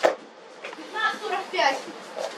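Speech: a voice talking faintly in the background, after a sharp click at the very start.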